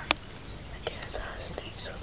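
Hushed human whispering, with one sharp click right at the start and a couple of fainter clicks later on.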